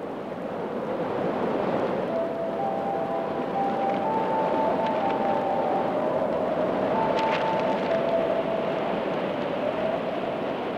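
A steady rushing noise that swells over the first couple of seconds, with a few faint, thin held tones above it.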